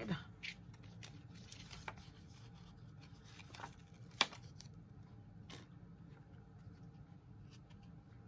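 Faint clicks and rustles of hands applying a mini glue dot from a roll to ribbon on cardstock, with one sharper click about four seconds in.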